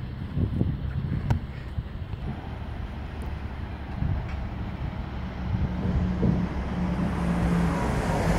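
Low, steady hum of vehicle engines and road traffic, growing a little louder in the second half, with wind on the microphone and a few small clicks early on.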